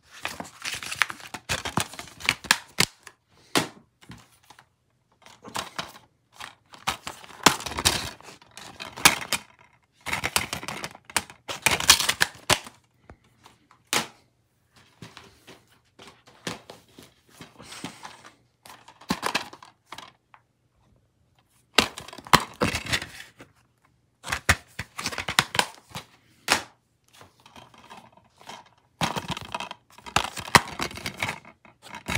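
Plastic DVD cases being handled and stacked, clacking against each other, with the rustle of a paper insert. The sounds come in irregular bursts of clicks and rustling, with short pauses between.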